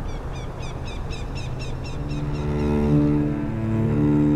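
Steady low outdoor rumble with a bird's quick series of about nine short falling chirps in the first second and a half. About two seconds in, slow, low bowed-string music (cello and double bass) fades in over it.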